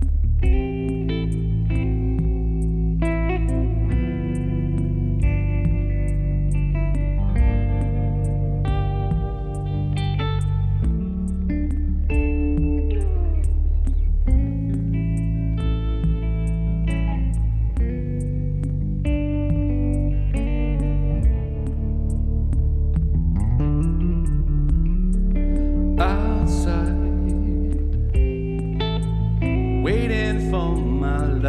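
Instrumental music led by an amplified electric guitar with an effect on it, picking melodic lines over held low bass notes. A faint steady ticking beat runs underneath, and a brighter sliding phrase comes in near the end.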